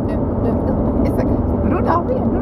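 Steady in-cabin drone of a 2001 Audi A4 B6 2.0 petrol cruising at road speed: engine and tyre noise.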